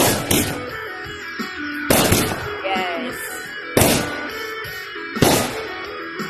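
Aerial fireworks bursting overhead: four loud bangs about every one and a half to two seconds.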